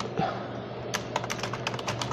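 Typing on a computer keyboard: an irregular run of key clicks, several a second, mostly from about a second in.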